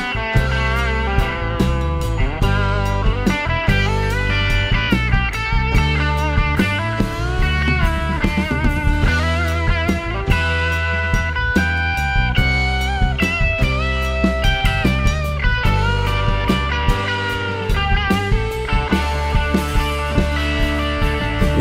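Country-rock band playing an instrumental break: a Telecaster-style electric guitar plays a lead line with bent notes over drums and bass guitar.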